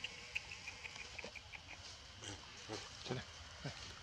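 Long-tailed macaques making short calls that slide steeply down in pitch, several in the second half, with a quick run of high chirps in the first second and a half.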